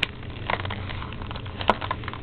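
Scattered light clicks and crackles of a product's retail packaging and tape being worked open by hand, over a low steady hum.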